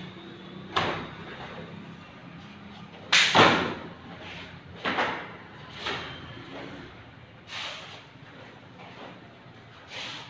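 A karate gi snapping and swishing with each punch and block of a kata, with bare feet thudding on foam mats: about six sharp cracks at uneven intervals, the loudest about three seconds in.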